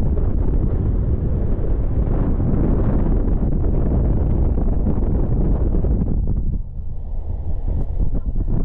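Wind buffeting the microphone: a loud, gusty rumble that eases briefly near the end.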